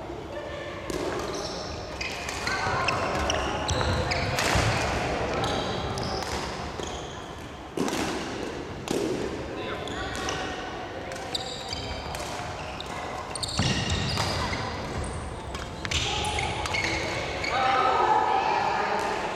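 A badminton doubles rally: sharp racket strikes on the shuttlecock about every second or so, with footfalls and shoe squeaks on the wooden court floor, echoing in a large hall.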